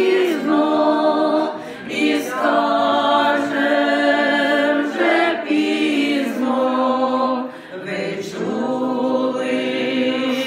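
A small group of women singing a church song a cappella from song sheets, in long held phrases. The singing breaks briefly for breath about two seconds in and again near eight seconds.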